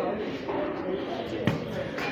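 A golf iron striking a ball off a driving-range hitting mat: one sharp click about one and a half seconds in, over background voices.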